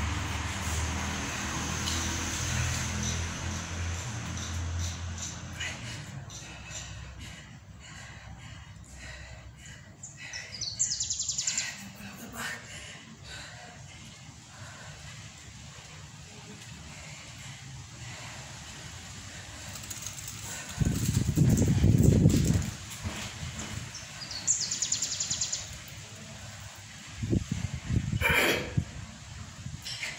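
Outdoor ambience: a bird gives a short, rapid high-pitched trill twice, once about a third of the way in and again near the end. A low rumble fades over the first few seconds, and a louder low rumble, the loudest sound, comes about three-quarters of the way through.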